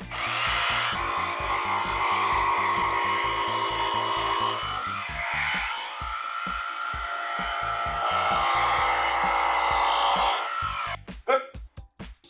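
Milwaukee M18 FBJS cordless jigsaw cutting through a plywood panel. It runs steadily for about eleven seconds with a brief dip about halfway, then stops.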